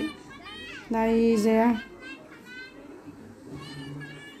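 Children's voices while playing: a child's loud, long held call about a second in, followed by quieter chatter.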